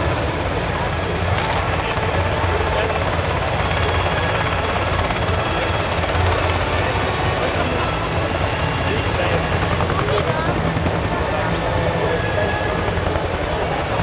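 Military helicopter flying by, its rotor and engine making a steady low sound.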